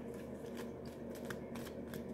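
A tarot deck being shuffled and handled by hand: faint, irregular soft card flicks and rustles, several across the two seconds.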